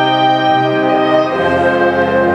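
Concert band playing slow, sustained chords, with the brass to the fore; the harmony shifts twice.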